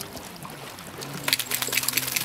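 Wet flat-coated retriever shaking water from its coat, starting a little past halfway: a quick run of slapping and spattering as the spray flies off its fur and ears.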